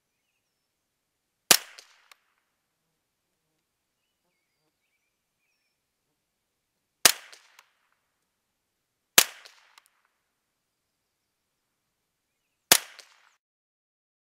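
Four shots from a CZ 511 semi-automatic .22 Long Rifle firing Winchester T22 target rounds, each a sharp crack with a short trailing echo. The shots come unevenly spaced, the second and third about two seconds apart.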